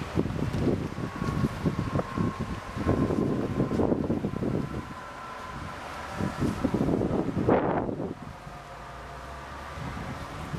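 Wind buffeting the camera microphone in irregular gusts, with the strongest gust about three-quarters of the way in. A faint steady hum runs underneath.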